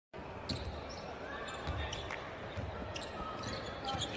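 Basketball being dribbled on a hardwood court: a series of irregularly spaced bounces.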